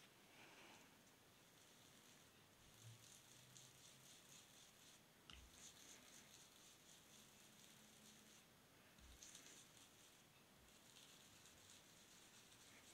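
Near silence, broken by several short spells of faint, soft scrubbing: a sponge ink-blending tool rubbed over paper to blend ink.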